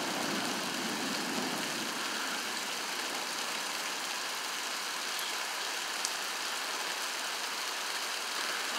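Heavy rain falling steadily, an even hiss with no pitch to it.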